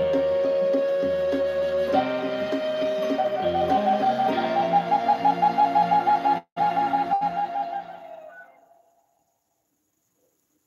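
Wooden Native American-style flute over a soft sustained backing accompaniment: a long held note, a step up, then a fast trill on the high note that closes the song. The music fades out about eight to nine seconds in, with a brief dropout in the audio partway through the trill.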